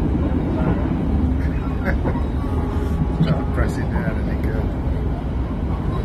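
Steady low rumble of a passenger train running, heard inside the carriage, with brief snatches of voices over it.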